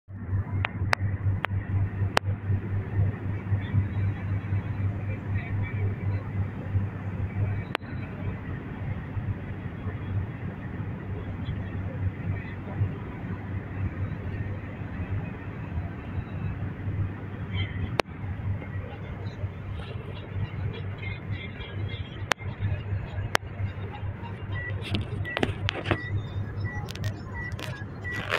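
Steady road and engine rumble inside a moving car's cabin, with a few sharp clicks scattered through it.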